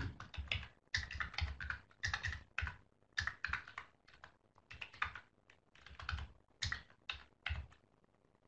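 Typing on a computer keyboard: irregular runs of key clicks, several a second, broken by short pauses.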